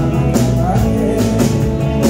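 Live rock band playing through a PA: electric guitars, keyboard and a drum kit, with regular cymbal and snare hits over a steady groove.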